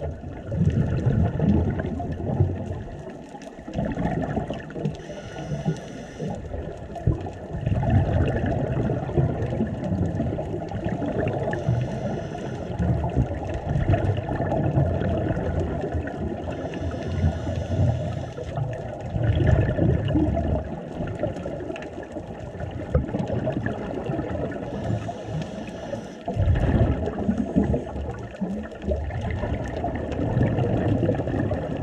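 Scuba diving underwater: a diver breathing through a regulator, with a short high hiss on each inhale and a loud burst of bubbles on each exhale, repeating every several seconds over a constant wash of water noise.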